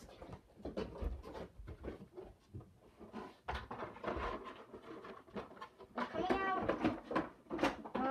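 Scattered clicks, knocks and rustles of an item being worked loose from a box, then a drawn-out vocal cry with a wavering pitch about six seconds in.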